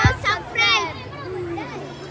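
Boys' voices calling out to the camera, loudest in the first second, with fainter talk behind.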